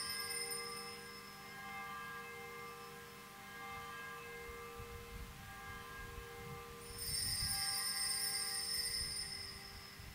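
Faint sustained ringing of altar bells or chimes at the elevation of the consecrated host. The ringing dies away after about a second and sounds again from about seven seconds in for a couple of seconds.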